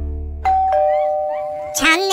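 A two-note 'ding-dong' chime like a doorbell, a higher note then a lower one, both ringing on, after a held music chord fades out.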